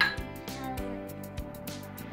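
Small wooden xylophone struck with a mallet: a few uneven, unrhythmic strikes, each note ringing briefly.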